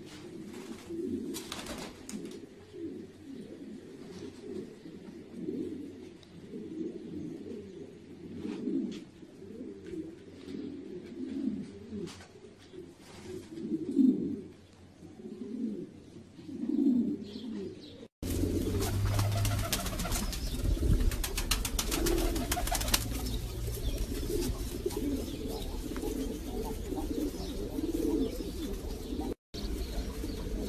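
Domestic pigeons cooing over and over in low, repeated calls. About 18 seconds in, a steady low rumble and hiss come in under the cooing.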